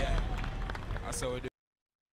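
A person's voice over low background noise, fading out, then cut off into dead silence about one and a half seconds in.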